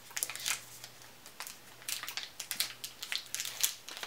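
Foil wrapper of a single-serving dark chocolate bar crinkling and crackling as it is peeled open by hand, in irregular short rustles.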